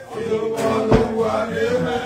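Voices singing a chant-like song, a man's voice holding a long note through most of it, with a single knock about a second in.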